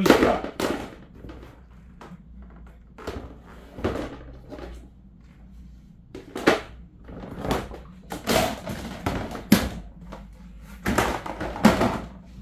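Hard plastic parts of a poultry feeder knocking and clattering as they are handled and fitted together: irregular knocks in clusters, the loudest near the start and near the end.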